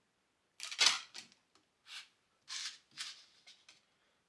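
Two 3D-printed parts being pried off a 3D printer's build plate: a handful of short scraping snaps and rustles, the loudest about a second in.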